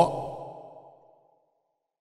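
A man's voice trailing off at the end of a spoken word, fading out over about the first second into complete silence.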